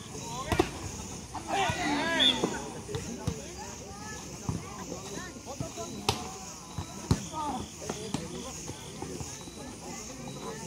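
Volleyball rally: a leather ball struck several times with sharp slaps, over players and spectators shouting and chattering. The shouting is loudest in a burst about a second and a half in.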